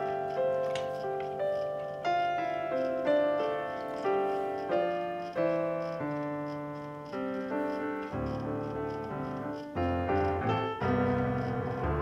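Background piano music: a steady run of struck notes, each starting sharply and fading away.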